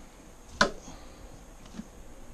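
A single sharp click about half a second in, then a faint tick near the end: the plastic frame of an aquarium hand net knocked against the rim of a plastic bucket to shake out scooped-up plant matter.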